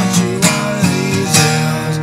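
Acoustic guitar strummed a few times, its chords ringing on between strums; the guitar is down to four strings.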